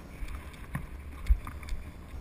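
Footsteps crunching on loose gravel and rock, about two a second, with one heavier footfall just past the middle. A low wind rumble on the microphone runs underneath.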